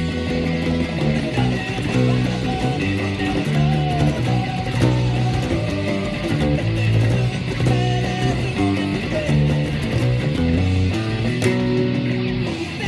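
Electric bass, a Precision-style bass, playing a driving punk-rock bass line of held notes that change every half second or so, loud over a full band mix of distorted guitars and drums.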